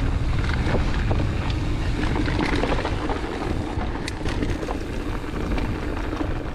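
Wind rumbling on the microphone over a Transition Sentinel 29er mountain bike rolling down a dirt trail: tyre noise on the dirt with scattered clicks and rattles from the bike over bumps.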